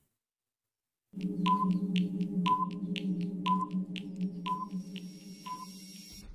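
Countdown-timer sound effect: a steady low hum with ticks about twice a second and a short beep once a second, starting about a second in and slowly fading.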